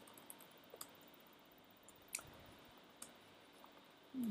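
Faint, scattered keystrokes on a computer keyboard: a handful of separate soft clicks a fraction of a second to a second apart, with near silence between them.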